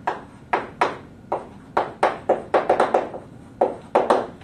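Chalk striking and scraping on a blackboard as a word is written: about a dozen sharp, irregular taps, several in a quick run in the middle.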